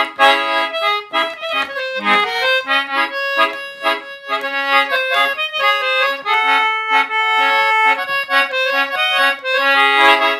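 Concertina played briskly: a quick reedy melody over short repeated bass chords, with one note held for a couple of seconds about six seconds in.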